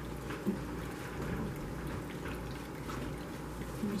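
Steady low background hiss with a low hum, and a couple of faint soft clicks about half a second in.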